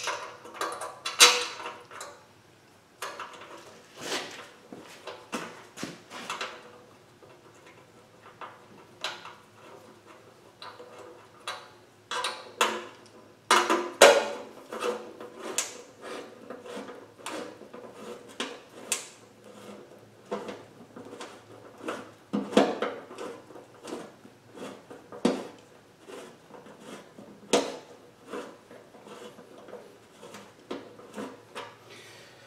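Irregular metallic clicks and taps of a socket and extension being fitted to and turned on the oil pan bolts of a steel oil pan by hand, with no ratchet rhythm.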